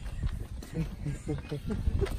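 Faint, low murmured voices in a few short bits over a low rumble, with no clear words.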